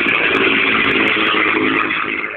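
Supermarine Spitfire's Rolls-Royce Merlin V12 engine running loudly as the aircraft flies past in a display, a steady sound whose engine pitch shifts slightly.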